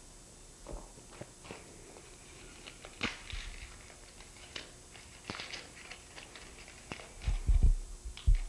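A small wrapped present being opened by hand: quiet, scattered rustles and crinkles of wrapping paper, with a few low thumps near the end.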